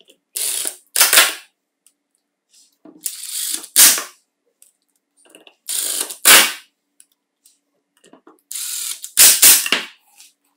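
Small cordless electric screwdriver driving four screws into an aluminium plate, one after another, about every two and a half seconds. Each is a short, steady run followed by a louder, sharp ratcheting burst as the screw seats.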